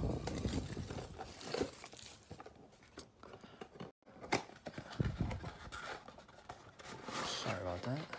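A cardboard trading-card box being torn open by hand, with foil-wrapped card packs rustling and crinkling as they are pulled out. The sound comes in irregular bursts of tearing, scraping and crinkling.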